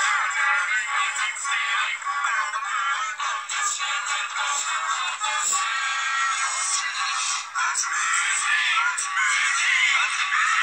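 A song with electronically altered, synthetic-sounding singing over its music, played back from an audio editor through computer speakers. It sounds thin, with almost no bass.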